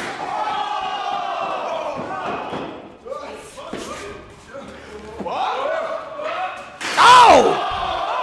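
Voices shouting as wrestlers brawl. Near the end comes the loudest sound: a sudden crash of a body slammed into the chain-link steel cage, which rattles the cage against the wall. A loud shout is heard with the crash.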